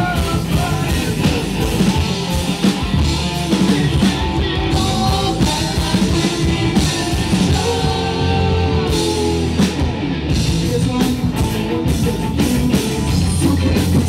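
Live rock band playing electric guitars, bass guitar and a drum kit, loud and continuous, with regular drum hits.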